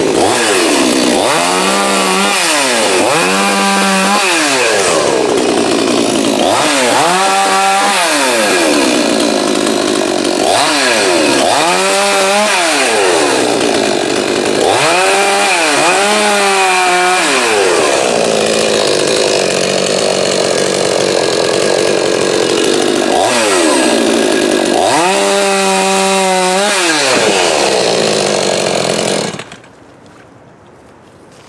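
YZ6200 Chinese clone gas chainsaw cutting limbs. The engine revs up and back down again and again, with stretches of steady noisy cutting in between, and stops abruptly near the end.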